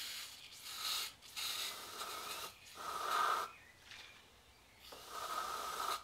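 Aerosol can of spray starch hissing in several short bursts, then a pause of over a second before a last burst near the end.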